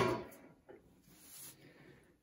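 A steel ammo can set down on a work stand: one sharp metallic knock right at the start that rings away over about half a second, followed by faint handling noise.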